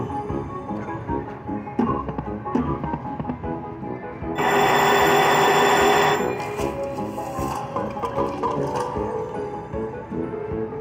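Huff N' Puff slot machine playing its bonus-game music while the reels spin. About four seconds in, a loud bell-like ringing sounds for about two seconds as the hard-hat symbols land and a win registers on the machine.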